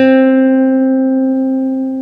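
Acoustic guitar holding one last note, plucked just before, ringing out and slowly fading as the piece ends.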